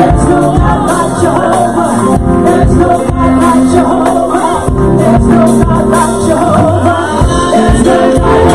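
Women of a church praise team singing a gospel song live into microphones, over instrumental accompaniment with a steady beat.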